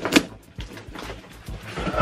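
A cardboard shipping box being handled and opened: a sharp knock just after the start, then quieter scuffs and small clicks as the box and its packing tape are worked at.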